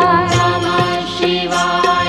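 Indian devotional song: a sung melody that bends and holds over a steady drum beat.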